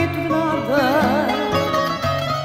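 A recorded Portuguese popular song: a woman's voice holding a note with a wide vibrato about halfway through, over plucked-string accompaniment with a steady bass line.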